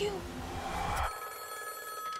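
Telephone bell ringing, starting about a second in just as a rising swell of noise cuts off abruptly.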